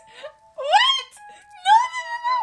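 A woman's high-pitched, wordless excited squeals: one sharp rising squeal about half a second in, then a second one held near the end.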